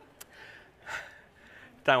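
A pause in a man's talk with a small click and two short, soft breaths into the microphone, then his speech starts again just before the end.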